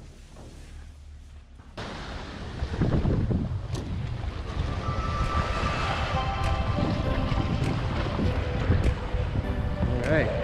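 Wind buffeting the microphone and water rushing past a windsurf board under sail. It cuts in suddenly about two seconds in, after a quiet stretch. From about halfway, steady musical tones sit over the noise.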